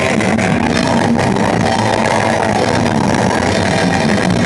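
Metal band playing live: loud distorted electric guitar in a dense, unbroken wall of sound.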